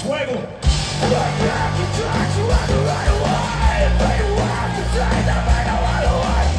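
Punk rock band playing live, with electric guitars, bass, drums and yelled vocals. A brief break in the first half second ends with the full band crashing back in.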